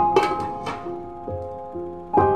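Gentle background piano music, with a few short clinks in the first second as a glass pot lid is set down onto the pot's rim.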